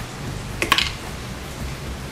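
A plastic container and tools being handled on a workbench: one sharp click about two-thirds of a second in, over a steady low background hiss.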